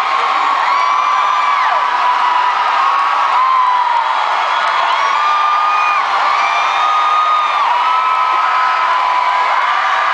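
Arena crowd of concert fans screaming and cheering at a steady level, with many long, high screams held and overlapping, some dropping in pitch as they end.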